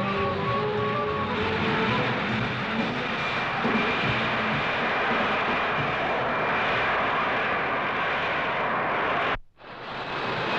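Jet aircraft engine noise: a loud, steady rush with a thin high whine, cut off suddenly near the end.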